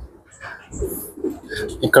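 Domestic pigeons cooing, low and repeated, with a man's single spoken word near the end.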